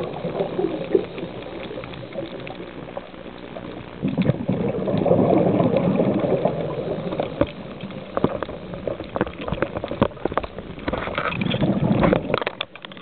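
Underwater, a diver's exhaled breath bubbling away: one rush of bubbles fading just after the start and another from about four seconds in lasting a couple of seconds. Fainter stretches follow, with scattered sharp clicks in the last few seconds.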